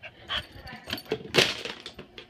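Dog rummaging in a toy bin and grabbing an empty plastic water bottle: irregular crinkles and knocks of the plastic, the loudest about one and a half seconds in.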